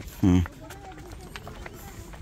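A brief voiced call just after the start, then faint footsteps on a sandy dirt path over a low outdoor background.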